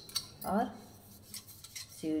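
A few light metal clicks and taps from a brass sev press being handled and its parts fitted together, a pair at the start and fainter ones near the end.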